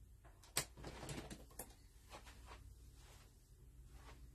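A few faint clicks and taps over a low steady hum. The sharpest click comes about half a second in, and a few more follow over the next second.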